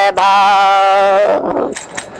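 A male voice singing a Hindi bhajan holds one long, steady note on the syllable "bhaa" for a little over a second, then trails off.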